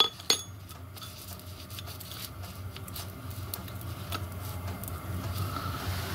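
Steel rod and small brass bearing blocks being handled and set down on the bench, giving two sharp ringing metal clinks at the very start, then scattered light taps and clicks.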